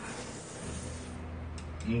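A person slurping noodles from a bowl with a short hissing draw at the start, then a low steady hum under the room, and a brief 'mm' of a man's voice near the end.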